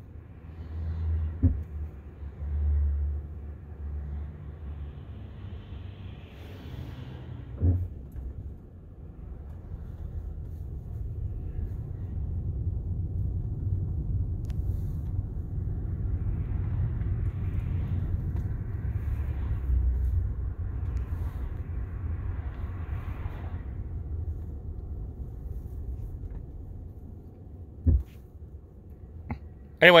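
Low road and tyre rumble inside the cabin of a Tesla electric car creeping along in stop-and-go traffic, louder through the middle stretch, with a few brief knocks.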